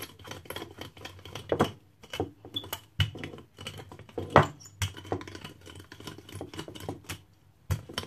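Wooden rolling pin rolling out a disc of bun dough on a hard countertop: a quick, irregular run of clacks and taps as the pin rolls and knocks on the counter, the loudest a little after four seconds in.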